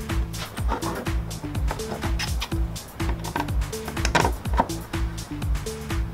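Background music with a steady beat under a bass line and held notes that change in steps.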